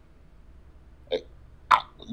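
A short pause in a conversation: faint steady background noise, one very brief vocal sound about a second in, and a short sharp noisy burst near the end as the next speaker begins.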